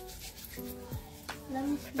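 Hands rubbing lotion together, under quiet background music.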